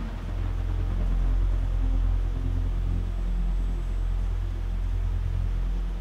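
A low, steady rumbling drone with faint held tones above it.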